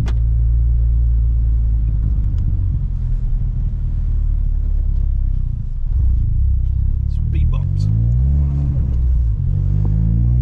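Car engine and road noise heard from inside the cabin while driving slowly. The engine note climbs in pitch from about six seconds in as the car speeds up.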